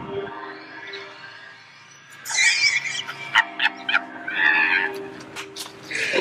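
A man laughing in loud, high-pitched bursts that begin about two seconds in, over steady background music.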